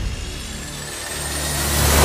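A motorcycle approaching, its engine sound swelling steadily louder.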